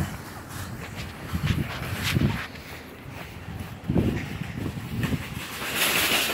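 Footsteps on outdoor pavement: a few soft, irregular low thuds over a steady outdoor background, with a brief rush of hiss near the end.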